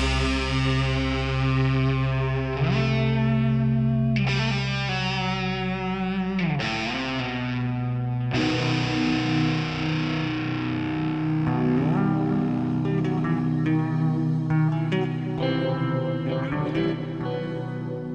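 Rock band music: distorted electric guitar with effects holds long sustained notes over steady bass notes, the notes changing every few seconds.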